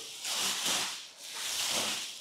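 Clear plastic wrapping rustling as it is pulled off a sofa, in two long swells, one in each half.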